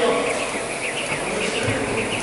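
A jump rope whirring through the air in fast rhythmic turns as an athlete skips, about four passes a second, with a buzzing sound.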